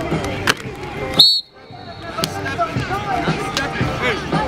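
Several voices calling out on a football practice field, with a sharp knock about half a second in and a short, high whistle blast about a second in, the loudest sound. Right after the whistle the sound cuts out briefly before the voices return.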